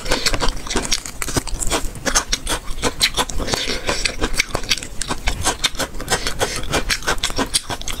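Close-miked crunchy chewing of chili-coated food strips: a dense run of wet crunches and crackles, with a bite or two as more pieces go in.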